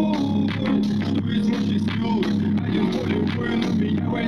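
A JBL Charge 4 portable Bluetooth speaker playing a song loud, with a heavy bass note pulsing in steady repeats under a drum beat.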